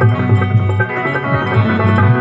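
Instrumental bhajan accompaniment: an electronic keyboard holds a sustained, organ-like melody over a steady rhythm of dholak drum strokes, some of the bass strokes sliding down in pitch.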